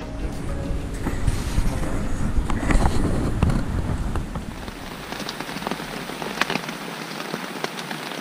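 Rain falling on a tent's fabric, heard from inside the tent, with sharp individual drop hits standing out. A low rumble underneath in the first half stops about five seconds in.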